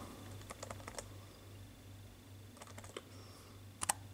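Typing on a laptop keyboard: a few scattered keystrokes in small groups, the loudest pair near the end, over a low steady hum.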